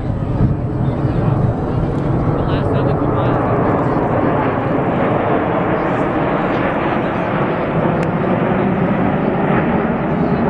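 A formation of Blue Angels F/A-18 Hornet jets flying overhead. Their jet engines make a loud, steady rushing noise that swells during the first second and then holds.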